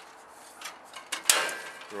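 Mole grips (locking pliers) clamping an aluminium strip onto an aluminium greenhouse vent frame: a short rasping metallic snap a little over a second in, with a brief ring after it.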